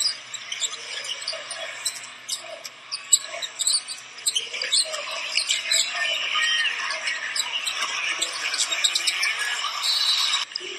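Court sound from a basketball game in an arena: sneakers squeaking on the hardwood and the ball bouncing, over the crowd's steady murmur.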